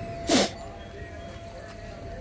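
A goat gives one short, raspy bleat that falls in pitch, about a quarter second in.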